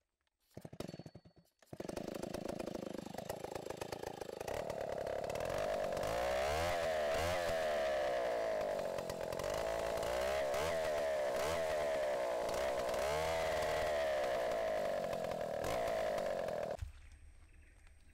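Small two-stroke petrol engine of a handheld power auger running under load as it bores into peat soil, its revs wavering up and down. It starts after a brief silence and stops abruptly shortly before the end.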